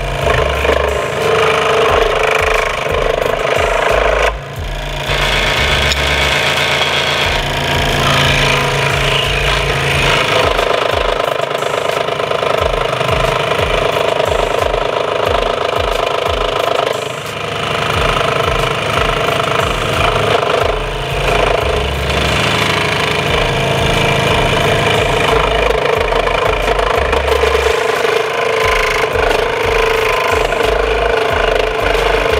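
WEN scroll saw running and cutting a wooden CO2 car blank, its blade reciprocating with a loud, steady buzz. The sound dips briefly about four seconds in and again around seventeen seconds.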